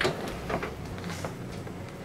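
A sharp click, then a fainter click about half a second later as a Fisher & Paykel single-drawer dishwasher is pulled open on its runners.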